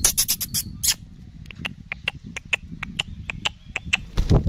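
Rapid run of short, high squeaking clicks, about five a second, with a few sharper clicks in the first second: a falconer's mouth-squeak call luring a young hobby falcon to the meat on his fist.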